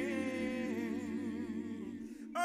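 Unaccompanied gospel voices holding one long sustained note with a slow vibrato, the sound easing slightly near the end.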